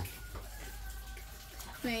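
A lull in conversation with only faint background noise, then a voice begins speaking near the end.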